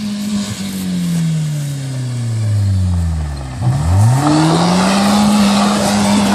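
BMW E36 3 Series sedan's engine held at high revs while spinning on gravel; the revs fall away over about three seconds, then it is revved quickly back up and held, with loose gravel spraying from the spinning wheels, louder after the revs climb again.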